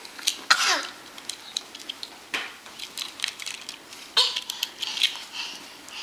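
A toddler's breathy huffs and short vocal bursts as he plays, with scattered light clicks and taps.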